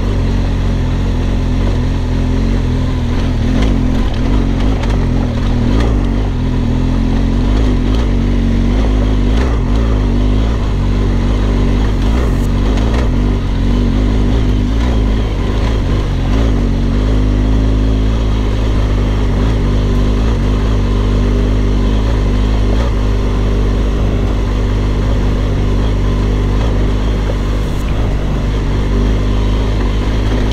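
BMW R1200GS boxer-twin engine running at low, steady revs as the motorcycle climbs a rocky trail, with wind noise and the odd tick of gravel under the tyres.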